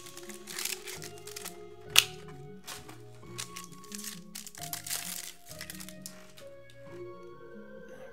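Trading cards handled by hand, giving a series of short clicks and snaps as they are slid and flipped against each other, the loudest a sharp crack about two seconds in, over quiet background music.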